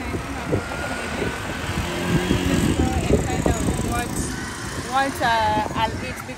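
Street traffic: vehicles running and passing, with a steady background of noise. A voice speaks near the end.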